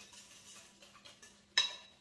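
Wire whisk stirring pie filling in a glass mixing bowl: a run of faint scraping strokes, then a single sharp metallic clink with a short ring about one and a half seconds in as the whisk knocks against the bowl.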